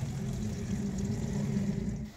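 A steady, low engine-like hum from a motor running nearby, with no clear rise or fall in pitch.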